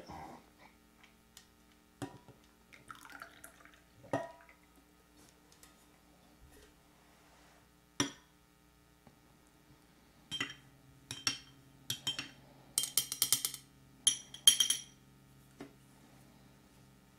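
A few light knocks as a steel carafe and a cream pitcher are handled and set down on the table. From about ten seconds in comes a run of quick, ringing clinks of a small spoon against a glass as cream is stirred into the coffee.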